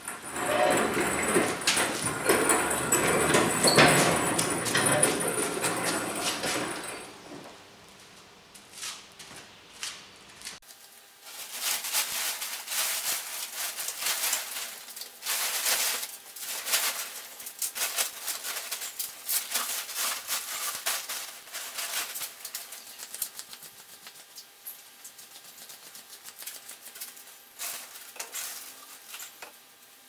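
A loud rough rushing noise for about the first seven seconds, then a plastic tarp crinkling and rustling in many short crackles as it is spread and tucked over a pallet load, growing fainter near the end.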